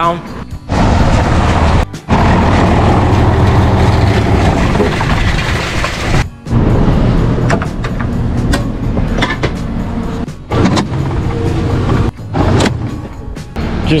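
Barn feed machinery running loudly with a steady low hum. It is most likely the cable-driven belt feeder being shut down at its control box, and the sound breaks off abruptly several times.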